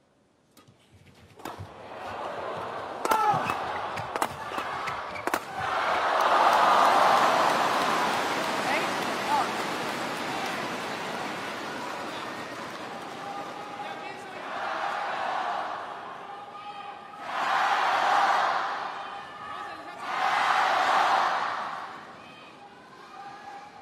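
A short badminton rally: a shuttlecock smacked back and forth by rackets, about half a dozen sharp hits, followed by a crowd cheering loudly as the point is won. The crowd noise carries on and swells again three times in loud bursts of voices near the end.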